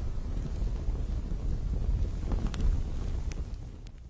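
A low, wind-like rumble with a few faint crackles, slowly fading out.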